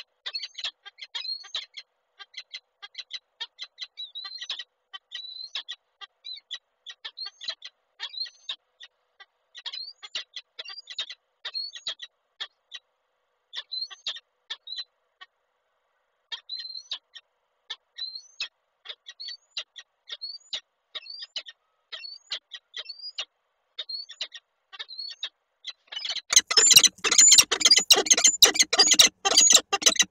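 Peregrine falcons calling: short, thin chirps repeated two or three times a second, in runs with pauses. About four seconds before the end, much louder, fuller and harsher calling breaks out as the male and female come together.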